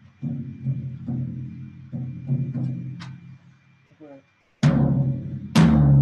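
Floor tom with die-cast hoops hit with a drumstick: several lighter strokes with a low ringing tone, then two much louder strokes with a deep boom about a second apart near the end. The growly, rattly 'farty' buzz is gone, now that a loose tension rod on the too-slack top head has been tightened.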